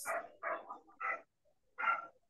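A dog barking, four short barks in quick succession.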